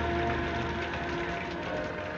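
Orchestral film score with held notes over a steady rushing noise, from an old 1930s soundtrack.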